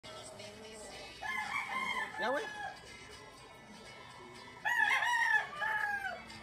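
A rooster crowing twice: a first crow just after a second in, and a longer, louder cock-a-doodle-doo starting about four and a half seconds in.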